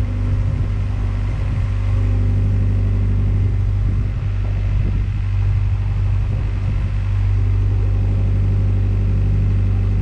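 A narrowboat's diesel engine running steadily at cruising speed, a constant low rumble with no change in pitch.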